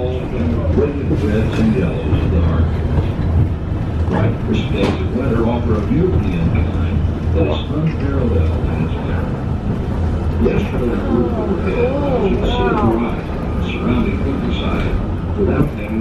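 Inside a Lookout Mountain Incline Railway car as it runs down the track: the car's steady low running rumble, with people's voices talking over it.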